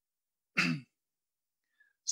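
A man clears his throat once, briefly, about half a second in; the rest is near silence.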